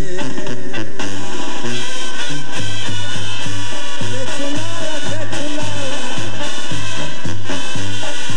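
A live band plays an instrumental passage of a ranchera between sung verses: a melody line over a steady, regular bass beat.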